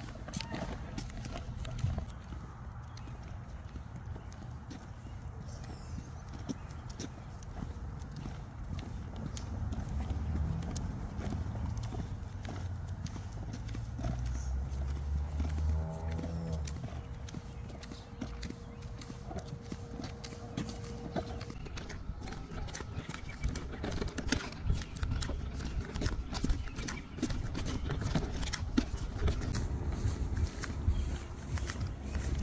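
Someone walking on a concrete sidewalk pushing a pet stroller: a run of light footsteps and small clicks and rattles from the stroller's wheels, getting busier in the second half.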